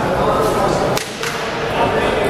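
Spectators' voices calling and talking in a large hall, with one sharp crack about a second in.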